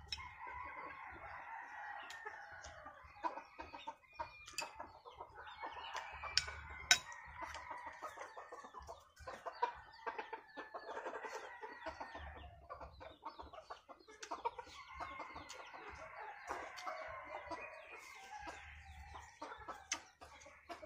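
Chickens clucking and calling again and again, with long drawn-out crowing calls from roosters coming in several spells, over scattered short clicks.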